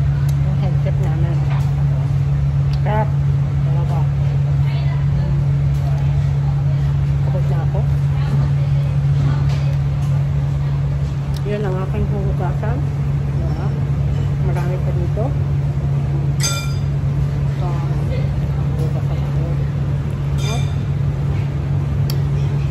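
Loud, steady low hum of commercial kitchen ventilation, with faint voices underneath. There is a sharp, briefly ringing clink about sixteen seconds in and a softer one near twenty seconds.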